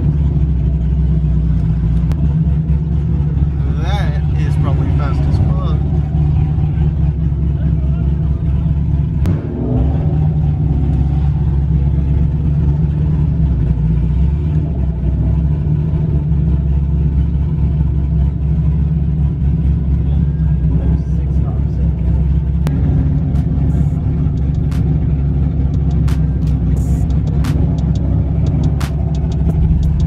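Car engine running at a low, steady drone, heard from inside the cabin as the car creeps along. There is a short pitched sound about four seconds in, and a run of sharp clicks near the end.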